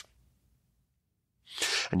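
A male speaker's sharp, audible intake of breath about one and a half seconds in, after near silence, leading straight into speech.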